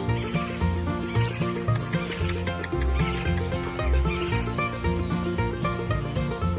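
Instrumental background music with a steady beat, in a country or bluegrass style.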